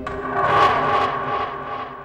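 A swelling soundtrack effect with several held tones over a whoosh-like haze, rising to a peak about half a second in and then fading away.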